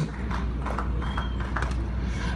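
A pause in amplified speech: a steady low hum with faint, irregular clicks and taps scattered through it.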